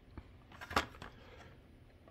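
A few light clicks and rustles of a carded die-cast toy car in its plastic blister being handled and set on a stand, the sharpest click about three quarters of a second in.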